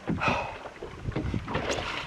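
Wind buffeting the microphone on an open boat, an irregular low rumble with a brief louder rush near the start.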